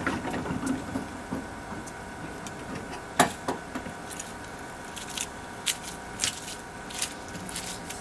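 Scattered light clicks and taps of steel tie wire and rebar being handled as rebar is wire-tied in an insulated concrete form, one sharper click about three seconds in and a cluster of them in the second half, over a steady faint hum.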